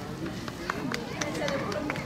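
Low, indistinct voices of people talking, with a few scattered sharp taps.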